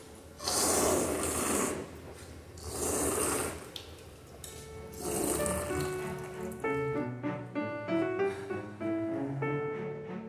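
A person drinking from a drinking fountain: the water stream and sipping come in three bursts of about a second each. Background piano music comes in about halfway through and carries on.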